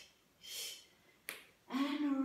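A woman breathing out hard in two short puffs during a Pilates back extension, then a single sharp click a little past a second in, and her voice starting again near the end.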